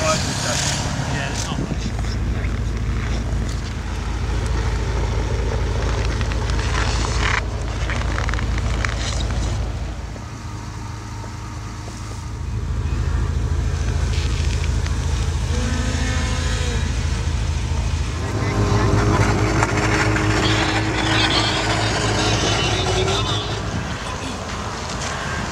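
A Bentley Continental Supersports' twin-turbo W12 engine idling as a steady low pulsing note, with voices in the background. The sound drops away for a couple of seconds about ten seconds in, then returns.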